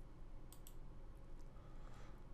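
A single computer mouse click, press and release in quick succession about half a second in, as the user opens a dropdown menu.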